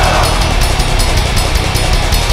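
A metal band playing a dense wall of distorted guitars over fast, even drumming.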